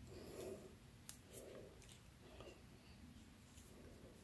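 Near silence: room tone, with a few faint soft handling sounds about once a second and a couple of very light clicks.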